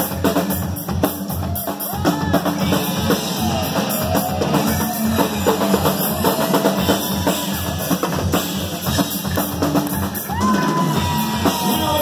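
Live rock band playing an instrumental passage without vocals: a steady, driving drum kit beat with electric guitars over it.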